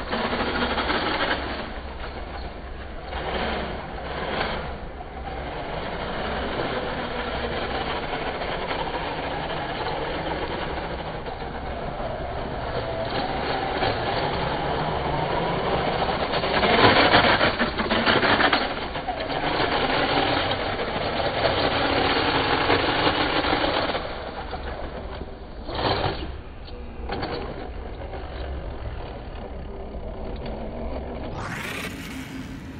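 RS4 RC drift car running on a wet tiled surface: its motor whine and tyre noise swell and fade as it accelerates and slides past, loudest about 17 seconds in.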